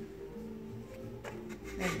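Light rubbing and handling noise with a few soft knocks, over faint steady background music.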